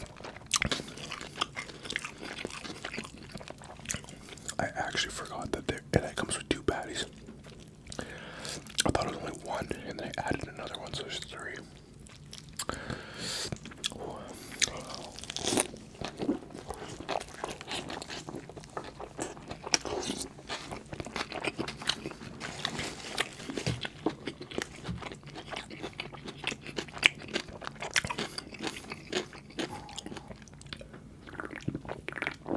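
Close-miked eating of a double-patty bacon cheeseburger: biting, chewing and crunching, with many small wet clicks and smacks of the mouth.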